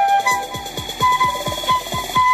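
Concert flute playing short notes over an electronic dance-pop backing track with a steady kick drum at about four beats a second; a held flute note starts near the end.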